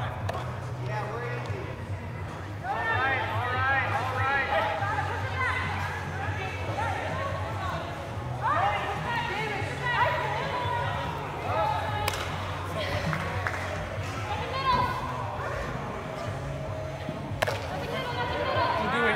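Players' voices calling out across a large indoor sports hall, over a steady low hum, with two sharp knocks, one about twelve seconds in and one near the end.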